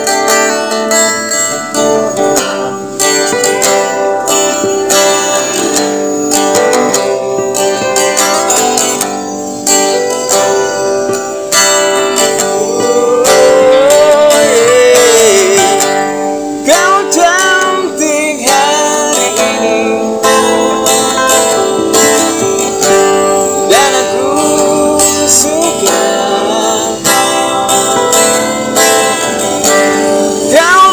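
An acoustic guitar is strummed as accompaniment to a male voice singing a slow pop song, with held, wavering sung notes in the second half.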